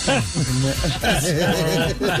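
Several people laughing at once: overlapping pitched chuckles that bob up and down, breathy during the first second.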